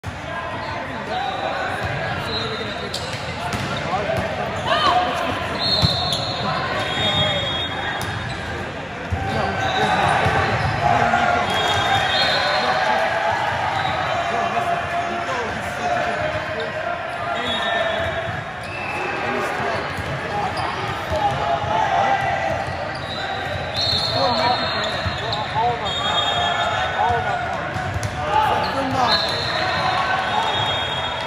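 Indoor volleyball rally in a large, echoing sports hall: balls being struck and bouncing, short high-pitched sneaker squeaks on the court floor every few seconds, over a steady din of player and spectator voices.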